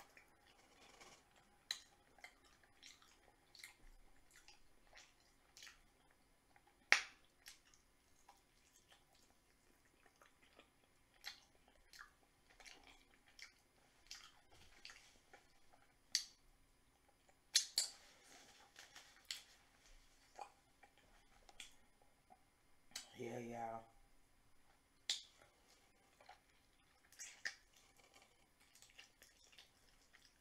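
Close-miked eating sounds of a person chewing fried chicken wings, with wet lip smacks and scattered sharp mouth clicks. About three-quarters of the way through comes one short hummed "mm".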